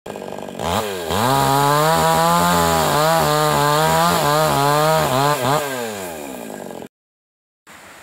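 Yamamax Pro mini chainsaw revving up about a second in and running at full throttle into wood, its pitch wavering under the load of the cut. Near the end it is blipped twice and then falls away as the throttle is released, before the sound cuts off suddenly.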